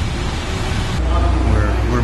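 Outdoor street noise: a steady low rumble that grows heavier about a second in, with faint voices in the background.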